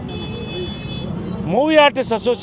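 A man's voice at a press statement: a short pause, then a drawn-out vocal sound near the end as he resumes. A faint high steady tone sounds for about the first second.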